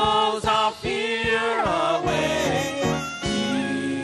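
Live gospel praise-and-worship music: a woman singing lead with backing singers over keyboard and band, the voices sliding between long held notes.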